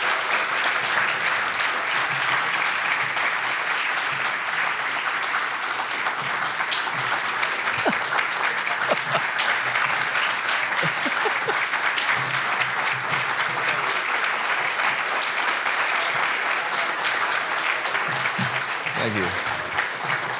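A large audience giving a standing ovation: many people clapping in a steady, sustained applause.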